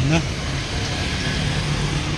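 Steady road traffic noise with a low, even engine hum.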